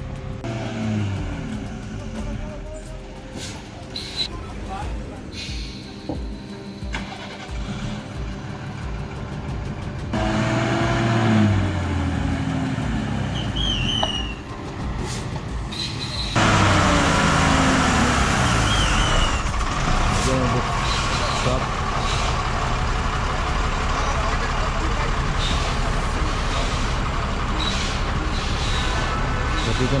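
Heavy multi-axle lorry's diesel engine running and revving on a steep hairpin; its pitch rises and drops several times, with men's voices calling out over it. The sound jumps abruptly about ten and sixteen seconds in, becoming louder and steadier.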